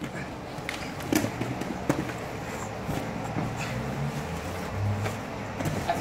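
Grappling bodies scuffling and shifting on vinyl gym mats and against a padded wall, with a few short, sharp knocks and slaps, over a steady low hum.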